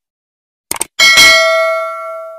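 Two quick mouse-click sound effects, then about a second in a bright bell ding that rings on and fades: the notification-bell sound effect of an animated subscribe button.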